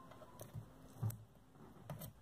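Faint handling sounds of a strip of cardstock being picked at and pressed by fingers on a cutting mat: a few light taps and rustles.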